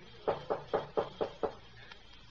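Knocking on a cabin door: six quick raps, about four a second.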